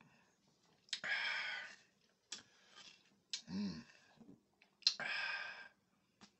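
A person tasting a sip of beer: mouth clicks and lip smacks, a breathy exhale through the mouth about a second in and another near the end, and a short low hum in between.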